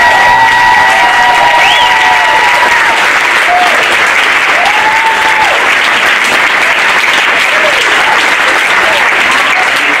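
Audience applauding steadily, with a few voices calling out over the clapping in the first few seconds.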